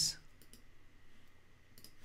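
A few faint computer mouse clicks against quiet room tone, two of them close together near the end, as files are selected and a right-click menu is opened to copy them.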